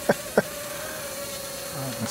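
Cheerson CX-30 mini quadcopter's motors whining steadily in flight, with three short sharp clicks in the first half second.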